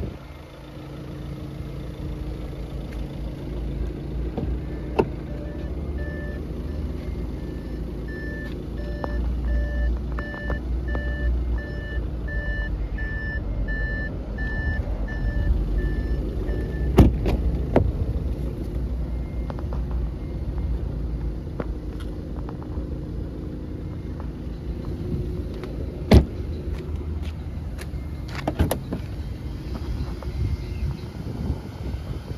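Audi A6 saloon with a steady low rumble underneath, a repeated electronic warning beep about every 0.7 seconds for roughly ten seconds midway, then a few sharp clicks and a louder door thud later on.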